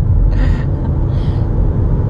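Steady low road and engine rumble inside a moving van's cabin, with two soft breathy sounds, about half a second and a second and a quarter in.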